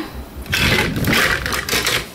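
Hands rummaging for a small plastic dollhouse chair: a dense rustling, scraping handling noise that starts about half a second in and lasts about a second and a half.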